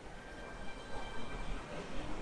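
Faint city street traffic noise: a steady low rumble with a faint high whine over it.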